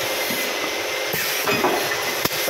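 Soda bottle filling machine running: a steady hiss with a faint steady hum, growing briefly brighter about a second in.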